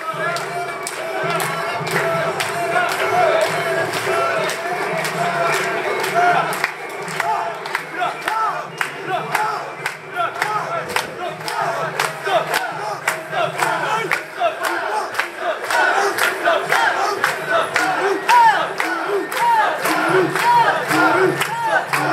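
A large crowd of portable-shrine (mikoshi) bearers and onlookers shouting a festival chant, many voices in short repeated calls that grow more distinct in the second half, with sharp clicks and clacks running through it.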